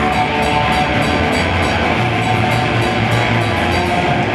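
Black metal band playing live: a loud, dense wall of distorted electric guitar over sustained bass notes and drums, with regular cymbal hits.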